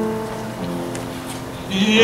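Piano playing slow sustained chords as the introduction to a hymn, with a man's voice starting to sing near the end.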